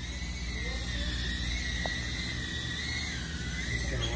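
Micro FPV quadcopter (tiny whoop) motors and propellers whining at a high pitch while flying, the pitch wavering slightly and rising briefly near the end.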